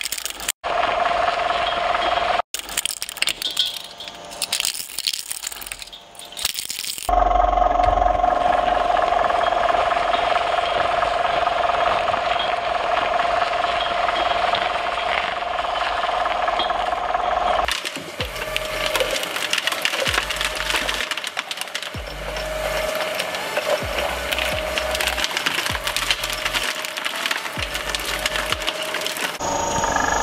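A twin-shaft shredder's cutter discs cracking and rattling through small toy cars. About seven seconds in, the sound changes to the machine's steady motor whine and grinding as it shreds an octopus. From about two-thirds of the way in, a pulsing low beat takes over.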